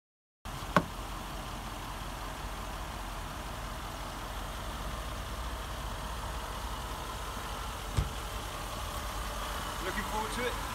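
Range Rover engine idling steadily, a low rumble that starts about half a second in, with two sharp clicks, one near the start and one near the end.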